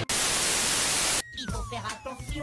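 A loud burst of white-noise static, about a second long, that cuts off abruptly. It is followed by a quieter, thin tone falling steadily in pitch.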